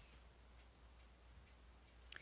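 Near silence: faint room tone with a low steady hum and faint, regular ticks.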